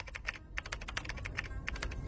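Computer keyboard typing: a quick, irregular run of key clicks, about eight a second, as an address is typed in.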